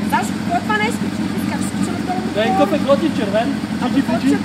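Motorcycle engine idling with a steady low hum, under voices talking.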